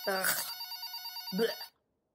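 Telephone ringing with a rapid electronic trill, cutting off abruptly shortly before the end, under a woman's disgusted "ugh".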